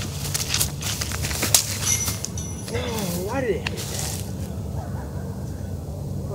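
Footsteps on dry grass during a disc golf throwing run-up, with several sharp clicks and rustles in the first two seconds, followed about three seconds in by a short, wavering vocal sound.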